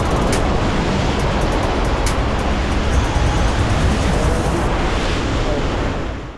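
Sea waves breaking against rocks, with wind buffeting the microphone, under background music with a beat that drops away about three-quarters of the way through.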